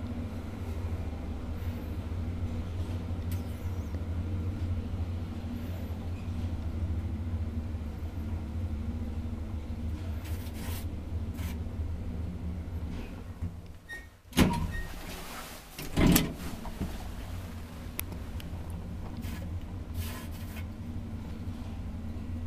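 A 1980 ValmetSchlieren traction elevator running, a steady low hum inside the car. About two-thirds of the way through the hum dips and two loud clunks come a second and a half apart, then the hum goes on.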